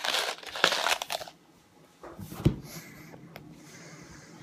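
A candy wrapper crinkling as it is handled: a bout of crackling in the first second or so, then a shorter bout with a sharp click about two and a half seconds in.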